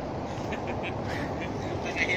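Steady outdoor background noise with a few short animal calls about half a second to a second in.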